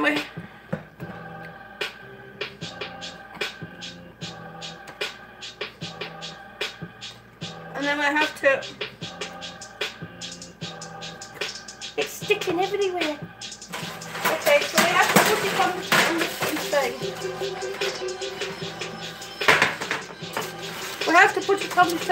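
Background music with a steady beat plays throughout. Over it, a utensil scrapes and stirs sticky homemade marshmallow in a plastic mixing bowl, loudest in a rough stretch about two-thirds of the way in.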